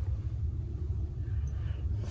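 A low, steady background rumble with no other distinct sound.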